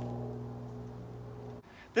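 A steady low mechanical hum with a few even tones, cutting off suddenly about a second and a half in.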